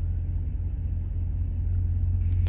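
Heavy tow truck's diesel engine idling: a steady low rumble.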